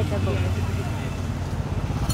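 Low, steady rumble of a running motor vehicle engine.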